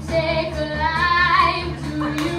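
A boy singing into a microphone over instrumental backing music, holding notes that bend in pitch.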